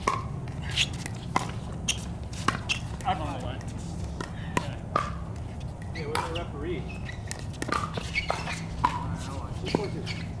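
Sharp pops of pickleball paddles striking plastic balls, a dozen or so at irregular intervals, with players' voices talking in the background over a steady low hum.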